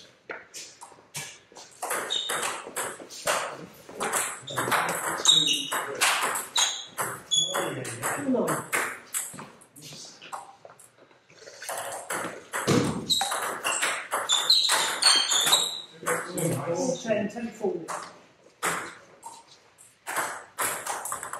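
Table tennis ball being hit back and forth over two rallies: quick, sharp clicks of the ball off the bats and the table, with a short pause in the middle between points.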